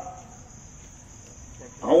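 Steady, high-pitched insect trilling heard through a pause in a man's amplified speech; his voice comes back in near the end.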